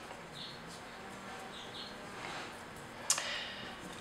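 Faint, brief squeaks of two-part molding putty being squeezed and kneaded between fingertips, with one sharp click a little after three seconds in.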